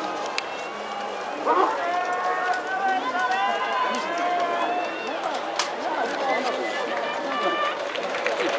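Several people's voices shouting and calling over one another in long, drawn-out cries, with a couple of sharp knocks.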